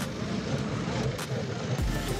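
Busy urban street ambience with vehicle noise.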